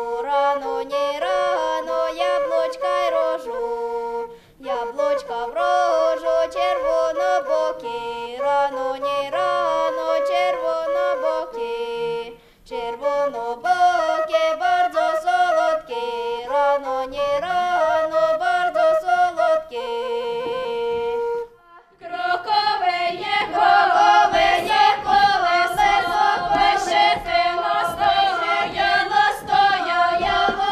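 A Ukrainian folk melody on a wooden end-blown flute with a girl's voice, sung in phrases with short breaks between them. About 22 seconds in it gives way to a fuller group of voices singing.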